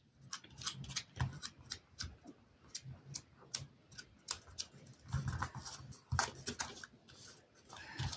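Hands pressing and smoothing a glued paper panel onto a card: faint, scattered taps and paper rustles, a little fuller about five seconds in.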